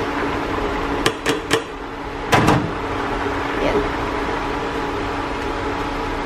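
Sliced hotdog scraped off a plastic cutting board into a stainless steel soup pot: three quick knocks about a second in, then a louder clatter just past two seconds, over a steady appliance hum.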